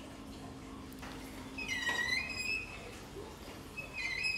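Hilti SFC 22-A brushed cordless drill boring a 22 mm auger bit into a log, heard faintly. Its motor whine dips in pitch about two seconds in and then recovers as the drill labours under the load.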